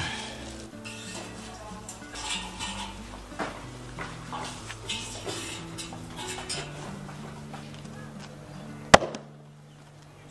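Background music over the clinks and scrapes of metal meat hooks being hung on steel rails, with one sharp, loud knock near the end.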